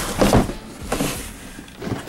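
Cardboard handling noise: a few short scrapes and rubs as a shoebox is shifted inside a cardboard shipping box.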